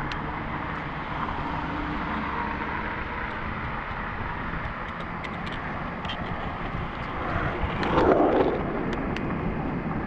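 Steady wind rush and road noise of a bicycle ride, heard through a handlebar or helmet action camera, with a louder rush that swells and fades about eight seconds in.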